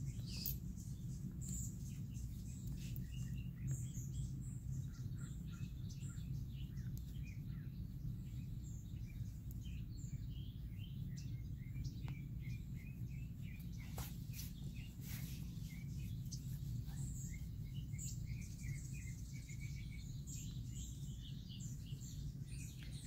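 Faint, scattered bird chirps over a steady low background hum, with a few soft clicks.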